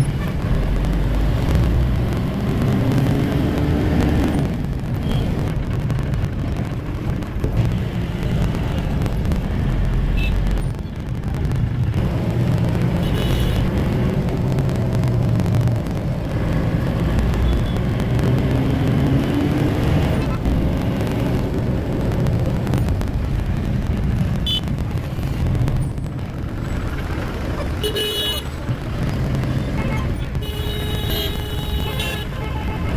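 Tempo Traveller van heard from inside the cabin while driving in traffic: a steady engine and road rumble, its pitch rising twice as the van picks up speed. A couple of short horn toots from surrounding traffic, one midway and one near the end.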